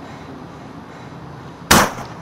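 A single gunshot near the end: one loud, sharp, very brief bang over faint steady outdoor background noise.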